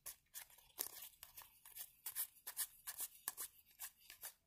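Trading cards being handled and leafed through one by one, a string of faint soft clicks and rustles of card stock, a few a second.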